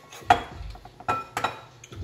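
A spoon clinking against a mixing bowl as cookie dough is scooped out: three sharp clinks with brief ringing, the first and loudest just after the start, two more close together past the middle.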